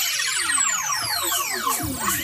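Electric guitar run through effects, making overlapping whining pitch sweeps that rise and fall across several octaves instead of played notes, with little low end.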